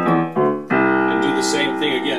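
Casio LK-280 keyboard on its piano voice, played low in the bass by the left hand: a note struck at the start, another about a third of a second in, and a third just under a second in that is held ringing.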